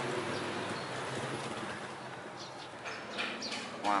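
Steady outdoor background noise, with a few short bird chirps in the second half.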